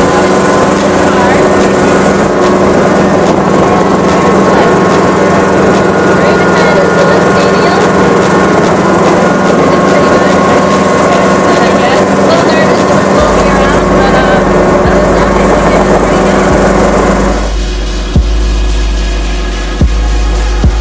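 Helicopter engine and rotor noise heard from inside the cabin: a loud, steady drone with a constant hum, with muffled talk under it. Near the end the drone gives way to music with a thumping beat.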